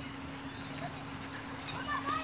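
Quiet outdoor background with a steady low hum, and faint distant voices near the end.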